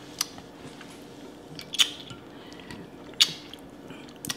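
Close-miked eating of a seafood boil: chewing and wet mouth noises, with three sharp clicks spaced about a second and a half apart.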